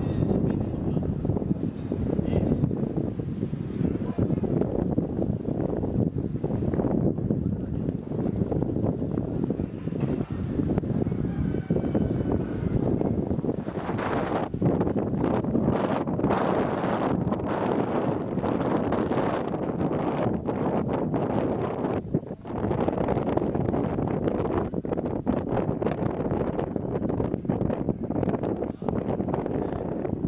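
Wind buffeting the microphone, a dense low rumble with gusts.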